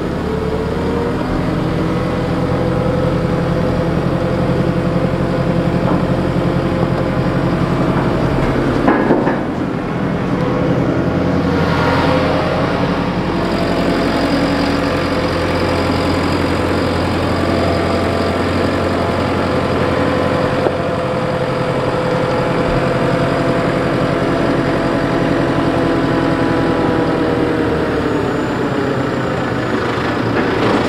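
JCB 542 telehandler's diesel engine running steadily as the machine works, its pitch shifting as the revs change near the start and near the end. A single loud clank about nine seconds in.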